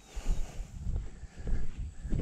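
Footsteps of a person walking on a dry grass track, heavy low thuds about twice a second, picked up by a chest-mounted camera that jolts with each step.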